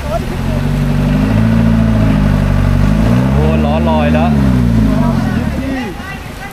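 A van's engine revving hard under load as it pushes through a muddy flooded road; the revs climb and drop twice, highest about four seconds in.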